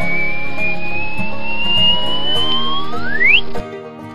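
A whistling sound effect over background music: one long tone rising slowly in pitch, joined by a second that sweeps up steeply near the end, then cuts off suddenly. It marks the turnips springing up from the soil.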